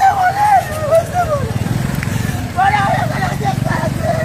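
Small motorbike engine idling with a steady low hum that comes in about one and a half seconds in, under a high, wavering voice.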